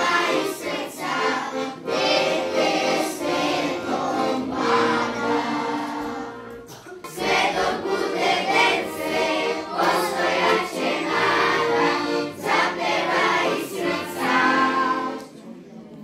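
Children's choir singing together. The singing breaks for a short pause about six and a half seconds in and again just before the end.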